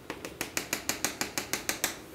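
Chalk tapping rapidly on a chalkboard while a dashed line is drawn: a quick, even series of about a dozen sharp taps, some seven a second.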